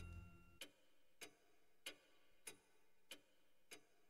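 Faint, steady ticking of a clock, a little under two ticks a second.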